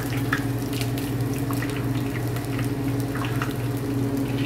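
Pork belly frying in hot peanut oil: a steady sizzle full of small scattered crackles and pops, over a steady low hum.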